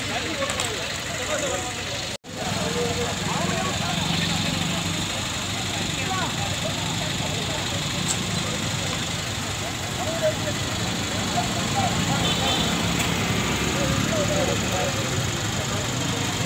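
Many voices of a gathered crowd talking over one another, with a vehicle engine idling steadily beneath. The sound drops out for an instant about two seconds in.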